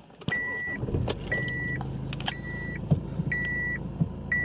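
A Honda Accord's 2.2-litre diesel engine starts a fraction of a second in and settles into a steady idle. Over it, a short high warning chime beeps four times, once a second.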